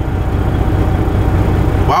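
Semi truck's diesel engine idling steadily, a constant low hum heard from inside the cab.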